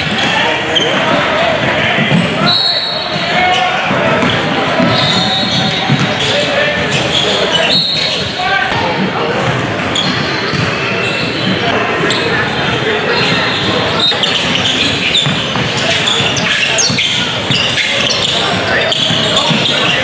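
Live gym sound of a basketball game echoing in a large hall: a basketball bouncing on a hardwood court, indistinct voices of players and spectators, and a few short sneaker squeaks.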